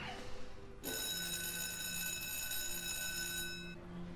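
Electric school bell ringing steadily for about three seconds, starting suddenly about a second in and cutting off shortly before the end.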